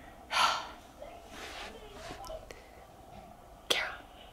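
Breathing close to the microphone: a loud breathy exhale about half a second in, a softer breath a second later, and a short sharp intake of breath near the end.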